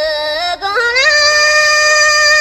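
Music with a solo singing voice: the voice slides upward about half a second in and then holds a long, high note with small ornamental turns.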